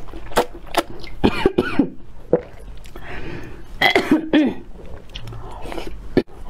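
Close-up mouth sounds of a person slurping noodles and broth: sharp sucking clicks and short, noisy gulping bursts, strongest about a second and a half in and again about four seconds in.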